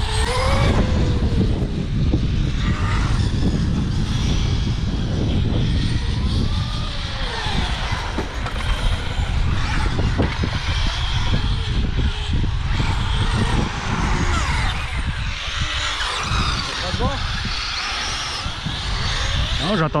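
Radio-controlled cars driving round an asphalt course, their motors whining and swooping up and down in pitch as they speed up and slow down, over a steady low rumble.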